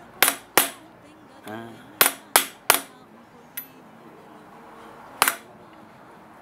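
Hammer blows on a small chisel cutting the openwork pattern into a metal pihuelo (spur shank) held in a bench vise: sharp, ringing metallic strikes, two, then three in quick succession, then a light tap and a last single blow, with pauses between.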